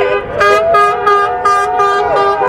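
Several car horns sounding at once, some held in long steady blasts, with one beeping in quick short toots about three a second.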